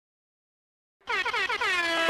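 Reggae sound-system air horn effect: a rapid run of short horn blasts that runs into one longer blast, starting about a second in.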